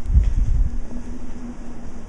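Low rumble of a handheld camera being moved about, strongest in the first second and then easing, over a faint steady hum.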